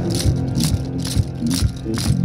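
Yosakoi dance music over loudspeakers, with naruko wooden hand clappers clacking sharply on the beat about twice a second.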